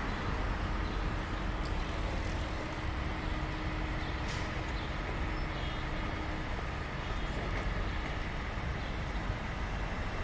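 City street traffic: a steady wash of car and truck engine and tyre noise, with a faint steady hum that stops about six seconds in.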